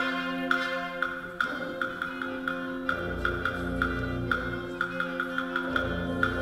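Middle school concert band playing a Greek folk-song piece: sustained wind chords over a steady tapping percussion beat, with deeper notes joining about halfway through.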